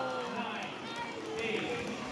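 An antweight combat robot's spinning weapon winding down, a faint falling whine, under the low chatter of onlookers.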